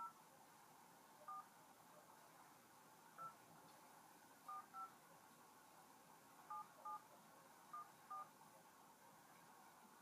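Phone keypad dialing tones: about nine short two-tone touch-tone beeps, one per key pressed, at an uneven pace as a phone number is entered. Near silence between the beeps.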